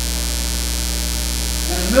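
Steady electrical mains hum in the church sound system's audio, unbroken through a pause in speech; a man's voice starts again near the end.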